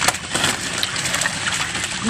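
Milkfish splashing and slapping in shallow water inside a harvest net as they are grabbed and tossed into sacks, many short splashes in quick succession over a steady low rumble.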